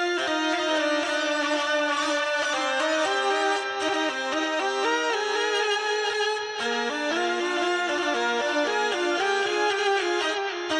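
Hurdy-gurdy playing a quick melody of short stepping notes on its keyed strings, with a buzzy bowed tone and held notes underneath; the line drops to a lower register about two-thirds of the way through.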